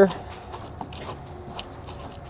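Faint clicks and scraping of a flathead screwdriver turning a plastic push-in fastener on a car's fabric-covered underbody panel.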